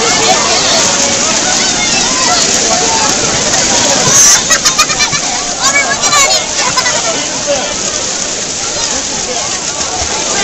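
Chatter from a crowd of voices at the poolside, with pool water splashing as hands reach in among floating rubber ducks; a louder splash and a run of quick splashy slaps come about four to six seconds in.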